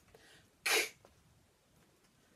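A woman saying the phonics sound for the letter k once: a short, breathy, unvoiced 'k' about two-thirds of a second in.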